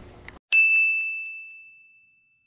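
A single bright ding, a chime sound effect struck about half a second in and ringing out on one high tone that fades over a second and a half: the cartoon cue for a lightbulb idea.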